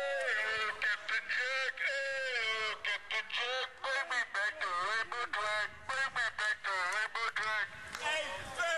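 A man's voice shouting through a megaphone in a fast, unbroken run of calls, thin-sounding with almost no bass.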